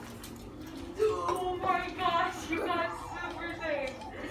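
Indoor chatter: people talking, starting about a second in after a quieter first second.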